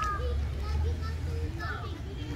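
Indistinct voices talking in the background, children's among them, over a low steady rumble.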